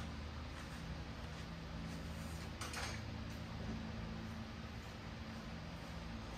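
Low, steady hum of room tone with a few faint clicks, the clearest a little before the middle.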